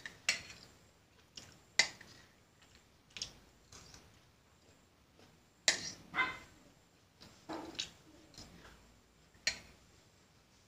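A steel spoon clinking and scraping against a steel plate of rice as it is eaten, in a few short, sharp knocks spaced a second or more apart.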